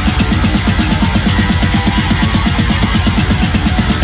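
Heavy metal band playing loud and steady, drums and guitars driving a fast beat of rapid low pulses, about eight to ten a second.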